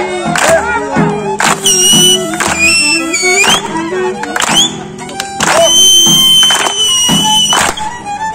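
Live Greek folk band playing a zeibekiko, a voice singing at first and a violin holding long high notes over it, with a sharp beat about once a second.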